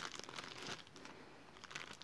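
Faint rustling and crinkling as hands handle a cotton fabric pouch and the items in its pockets, with light scattered clicks that die away about a second in.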